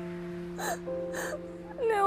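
A woman sobbing and whimpering: two short breathy sobs about half a second and a second in, then a wavering, rising cry near the end, over soft sustained background music.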